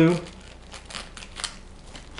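Thin plastic wrap crinkling as it is handled and snipped with scissors close to a hot-glue bead, a few sharp crackles.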